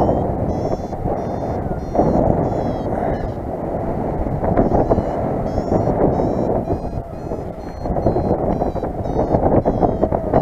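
Airflow rushing over the microphone during paraglider flight, with a variometer beeping steadily in quick, short chirps that rise in pitch, the tone a vario gives while the glider is climbing in lift.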